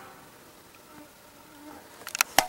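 Faint buzzing of flying insects over quiet outdoor background noise.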